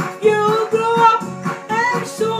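A woman singing a pop song, holding long notes that bend at their ends, over a rhythmic accompaniment with a steady beat.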